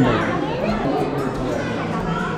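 Indistinct background chatter of several people talking at once, with no single voice standing out.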